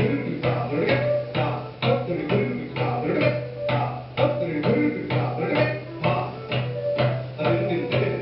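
Tabla played in rapid, dense strokes over a steady low drone, in a live Indian fusion ensemble.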